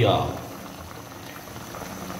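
Paksiw broth of vinegar and water boiling around whole round scad in a pan: a steady bubbling.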